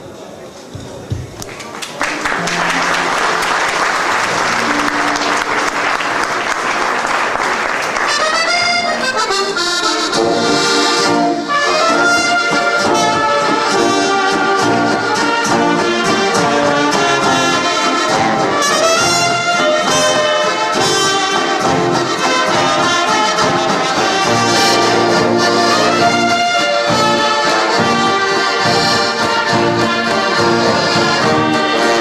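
Accordion ensemble with tubas, trumpets, guitar and drums playing a waltz together. After a quieter first two seconds the music comes in under a steady rush of noise, and from about eight seconds in the full band plays loudly.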